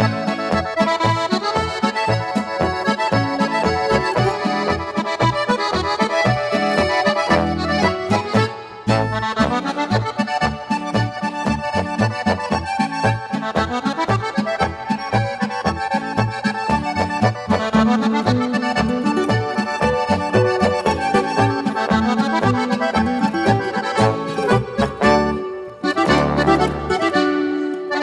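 Oberkrainer-style instrumental folk music led by piano accordion, with rhythm guitar, concert guitar and baritone horn over a steady pulsing bass beat.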